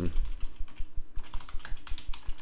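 Typing on a computer keyboard: a quick run of keystrokes.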